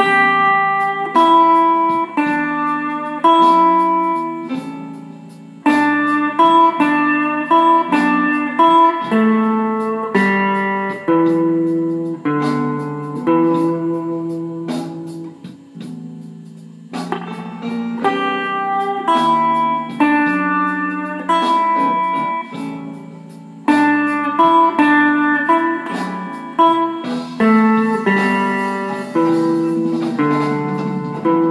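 A Fender electric guitar improvising slow blues licks on the E minor pentatonic in open position. Single picked notes come in phrases, with short pauses between them.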